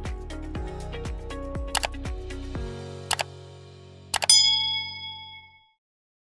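Outro music with a beat of about three kick-drum thumps a second fades after a few seconds. Under it come three pairs of mouse-click sound effects, and about four seconds in a bright notification-bell ding rings out, the loudest sound, of the kind used for a subscribe-button animation.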